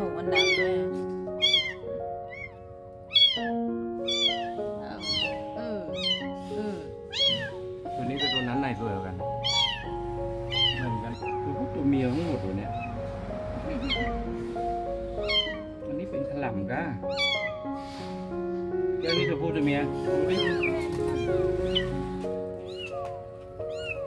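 A very young kitten mewing over and over in short, high cries, about once a second at first and more often later on, over soft background piano music.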